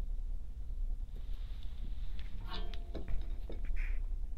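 Small handling sounds of hands working a wire and a flux syringe: a few light clicks and a brief squeak about two and a half seconds in, over a steady low hum.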